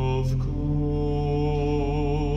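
Pipe organ playing sustained chords over a held low pedal note, with a change of chord about half a second in.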